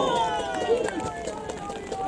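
Several people shouting at once, their voices overlapping and trailing off during the first second, with fainter calls after.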